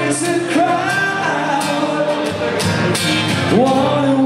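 Live rock band playing, with acoustic and electric guitars, drums and a held sung vocal line, heard from among the audience.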